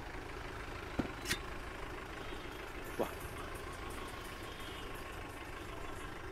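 Quiet, steady background rumble with a few faint clicks, about one second in, just after that, and again near three seconds.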